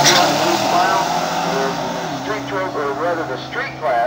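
A turbocharged minivan and a Ford Mustang accelerating hard down a drag strip, their engines pulling up in pitch and fading as they run away. A man's voice over a PA system takes over in the second half.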